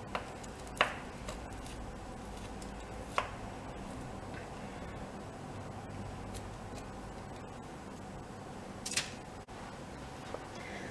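A metal spoon scraping sticky, hardening honeycomb mixture onto a paper-lined baking tray: a few short sharp clicks and taps spread through, over quiet room tone.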